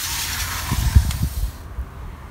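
A glass window-door being slid open: a rushing slide for about a second and a half, with a few low thuds partway through.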